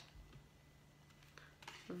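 Near silence: room tone with a faint steady hum and a few soft ticks.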